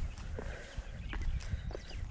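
Footsteps walking down a dirt footpath, a series of short irregular steps over a steady low rumble.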